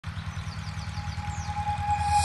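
A light single-engine propeller airplane's engine and propeller running, a low, evenly pulsing drone. A steady tone swells in near the end.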